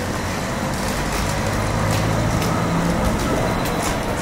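Steady city street noise: a low traffic rumble with occasional sharp clicks.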